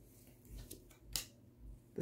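A tarot card being turned over and laid on a wooden table: a few soft handling sounds and one short, crisp card snap about a second in.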